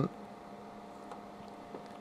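Low steady electrical hum of a bench room, with a couple of faint clicks of front-panel keys being pressed on a network analyzer, about a second in and near the end.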